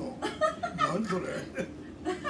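A man talking with a chuckle in his voice.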